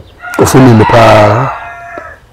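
A rooster crowing: one long crow that trails off into a thin held note near the end, with a man's voice overlapping its first part.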